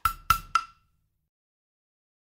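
Recorded backing drum track for a classroom chant: three quick percussion hits, each with a short ring, then the track stops less than a second in.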